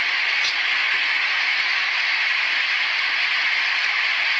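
Floodwater rushing past fast, a loud, steady hiss with no break.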